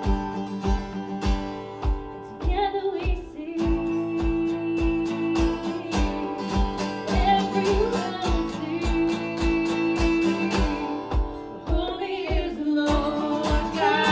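Live song: a woman singing to strummed acoustic guitar over a steady low beat about twice a second, with the voice coming in a couple of seconds in.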